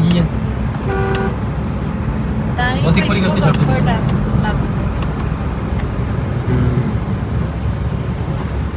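Steady road and engine noise inside the cabin of a Mahindra Scorpio-N driving at speed. About a second in there is one short pitched beep-like tone, and brief voices come a couple of seconds later.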